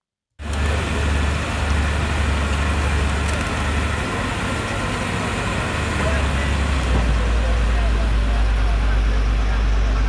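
Excavator's diesel engine running at a construction site, a steady deep rumble with outdoor noise over it, starting abruptly about half a second in.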